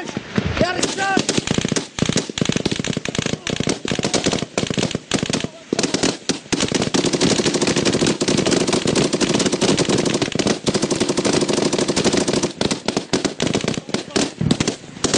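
Loud automatic gunfire: rapid bursts with short gaps at first, then nearly unbroken firing from about six seconds in. A man's voice shouts briefly at the start.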